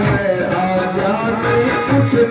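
Live Indian devotional band music: an electronic keyboard melody played over percussion from an electronic drum pad struck with sticks and a dholak.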